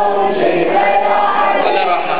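A crowd of men chanting loudly in unison: a hawasa, the call-and-response chant of a Shia mourning procession, sung by many voices together.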